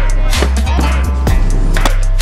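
Music track with a deep, heavy bass line and a regular drum beat, punctuated by short falling bass sweeps.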